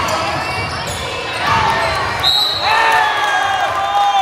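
Basketball game sounds in a gym: a ball bouncing on the hardwood court, sneakers squeaking and voices shouting, with several sliding squeaks and shouts in the second half.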